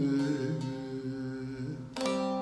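A man's voice holding the final sung note over the bağlama, slowly fading. Just before the end a single sharp bağlama strum rings out.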